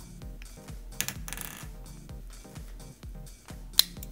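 Background music with a steady beat; near the end, one sharp click as a Bluetooth earpiece snaps onto its USB charging clip. A brief rustle of handling about a second in.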